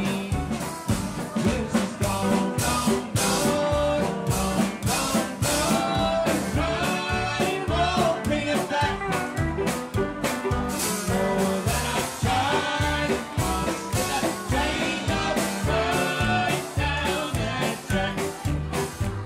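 Live western swing band playing an instrumental passage: acoustic guitar, electric guitar and upright bass keeping a brisk, steady beat under a melodic lead line.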